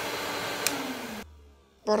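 Cartoon vacuum cleaner being switched off: a sharp click, then the motor's rushing noise winds down with a falling hum and cuts out about a second and a quarter in.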